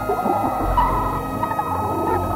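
Electronic music: several sustained tones sliding slowly downward over a low drone, with scattered grainy crackles in the middle range. The drone's pitch shifts a little over half a second in.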